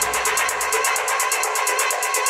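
Techno DJ mix with the kick drum and bass pulled out, as in a breakdown or filtered mix transition. A fast, even ticking of high percussion, about eight a second, runs over a mid-range synth.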